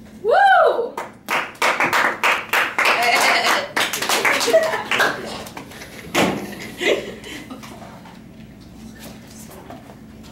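A short rising-and-falling whoop, then a small group clapping for about four seconds with voices mixed in, dying away about six seconds in.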